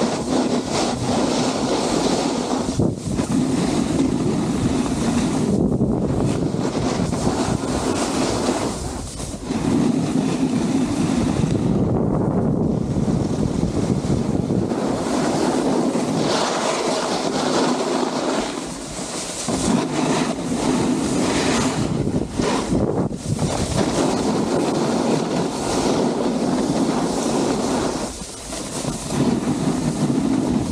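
Snowboard sliding over groomed snow, a continuous scraping rush that eases off briefly several times as the board changes edges, mixed with wind noise on the microphone.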